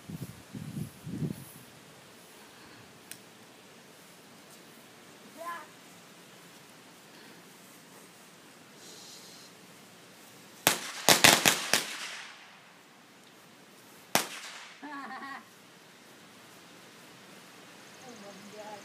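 Firecrackers going off: a quick string of about five sharp bangs, followed about two seconds later by one more bang.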